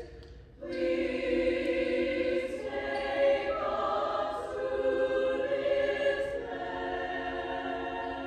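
Small choir singing sustained chords. A brief break for breath comes just under a second in before the next phrase enters, and the chords then move on through changing pitches with faint 's' consonants.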